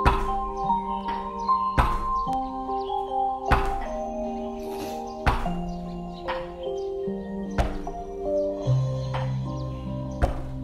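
A person's back thumping against a wall, one thud about every two seconds, in a wall-bumping exercise meant to shake loose phlegm. Background music with slow, held notes plays throughout.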